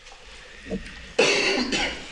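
A person coughing: a loud double cough, the two coughs close together, a little over a second in.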